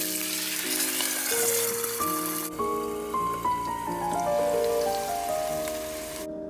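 Water poured into a hot oiled pan of dumplings, setting off loud sizzling and spattering as they are pan-fried and steamed; the sizzle eases a little about halfway through. Soft piano music plays underneath.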